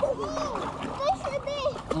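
A toddler babbling and calling out in short, high-pitched sliding sounds, over water splashing in the pool.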